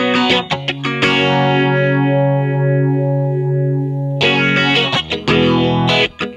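Electric guitar played through a Diffractor Soundings Chromatic Journey stereo analog phaser pedal: a few picked notes, then a chord held for about three seconds with a slow sweeping phase shift, then picking again near the end.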